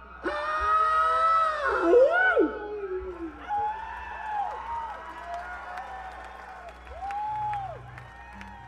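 Concert audience cheering at the end of a song: a loud drawn-out yell in the first two seconds, then scattered rising-and-falling whoops, one louder near the end.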